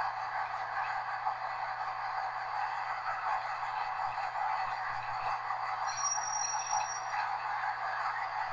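Class 201 Hastings diesel-electric multiple unit in motion, heard from inside its rear cab as a steady running noise. A faint high tone sounds briefly about six seconds in.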